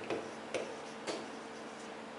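Chalk tapping and scraping on a blackboard as words are written, with a few short clicks roughly half a second apart.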